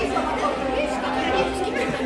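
People talking, several voices overlapping in a general chatter.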